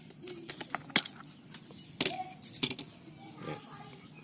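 Hand pruning shears snipping through the stalk of a cycad leaf: a series of sharp clicks, the loudest about a second in and again about two seconds in.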